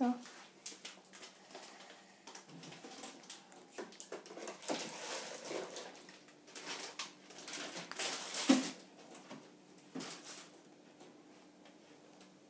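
Small scissors snipping and fiddling at a small plastic toy figure: scattered soft clicks and rustles at an uneven pace, with a louder click about eight and a half seconds in.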